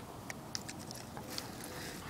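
Quiet outdoor background with faint rustling of dry grass and a few light clicks as a stick is handled.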